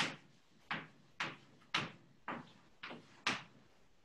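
Chalk writing on a blackboard: a run of about seven sharp chalk strokes and taps, unevenly spaced at roughly two a second, each fading quickly.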